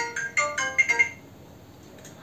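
Mobile phone ringtone playing a quick melodic tune of short, bright notes, cut off about a second in when the call is answered.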